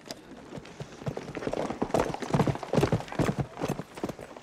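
Hooves of several horses clopping on a dirt street. The hoofbeats come quick and uneven, growing louder about a second in.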